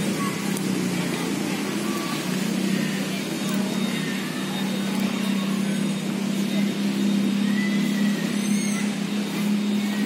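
Steady outdoor background noise with a constant low hum, and faint distant voices now and then.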